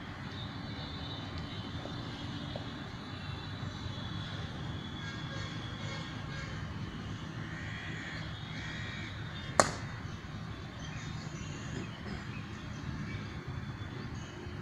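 Steady outdoor background with a low rumble and faint bird calls, broken once by a single sharp knock a little after the middle.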